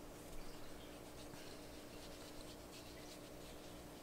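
Faint brushing of a paintbrush laying paint onto paper, over a low steady hum.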